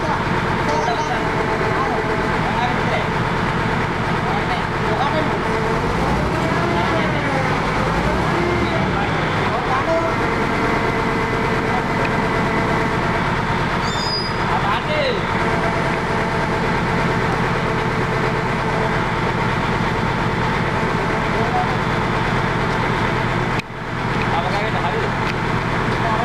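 Truck engine running steadily, its hum even throughout, with voices over it.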